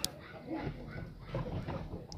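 Faint distant voices over a quiet background, with a single sharp click at the very start.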